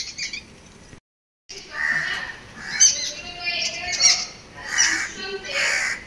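Birds calling, mynas among them: a run of short chirps and harsher calls, with the sound cutting out completely for about half a second a second in.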